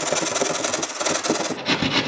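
Hand drywall jab saw rasping through drywall in quick short strokes as the edge of a hole is trimmed wider. The sawing eases off about one and a half seconds in.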